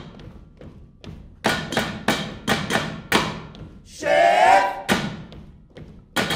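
A quick, uneven run of heavy thuds and knocks with ringing tails, then a short pitched vocal cry about four seconds in, followed by one more knock.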